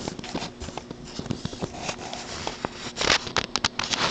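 Light, irregular mechanical clicks and taps, with a short quick flurry of sharper clicks about three seconds in.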